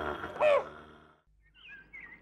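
A woman's breathy sigh with a short, falling groan about half a second in. A few faint bird chirps follow near the end.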